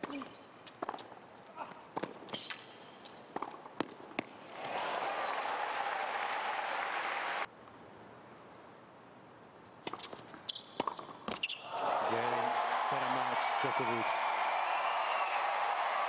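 Tennis ball struck and bouncing on a hard court in a rally, then a few seconds of crowd applause. After a cut, several ball bounces before a serve, followed by sustained crowd cheering and applause with a man's voice over it.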